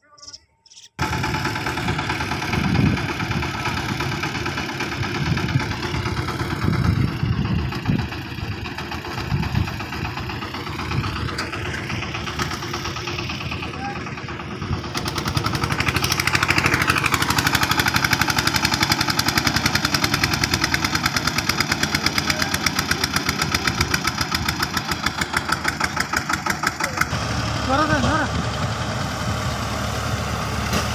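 Diesel engine of a power tiller hauling a loaded trolley, running loud and close. In the second half it settles into a steady, rapid firing rhythm. Voices are mixed in.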